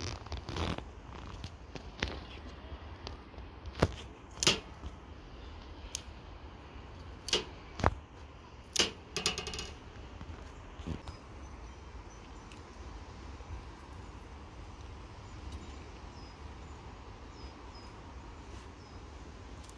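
Fresh dill stems rustling and snapping as they are broken and pushed into the neck of a glass jar packed with vegetables, with scattered sharp clicks and knocks through the first half and a short rattle about nine seconds in. Quieter handling follows.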